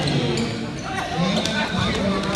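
Futsal ball being kicked and dribbled on a hard court floor: several sharp taps of ball and shoes during a tussle for the ball, with voices calling over it.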